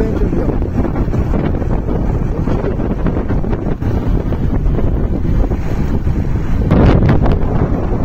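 Wind buffeting the microphone on a moving motorcycle: a loud, steady rush of low rumbling noise, with a stronger gust about seven seconds in.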